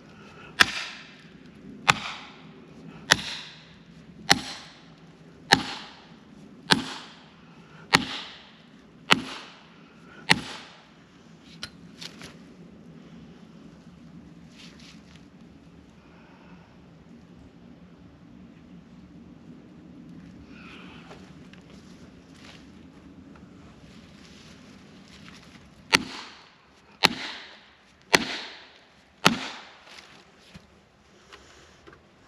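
Axe blows driving a felling wedge into the back cut of a tree: nine sharp strikes about one a second, a long pause, then four more near the end. Each blow drives the wedge in to lift the tree.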